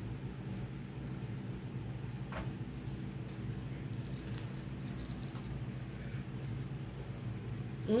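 A 78-card tarot deck being shuffled and handled by hand: soft, intermittent card rustles, over a steady low hum.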